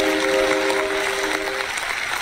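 Backing music holding one steady chord that stops about a second and a half in, over a steady applause-like hiss.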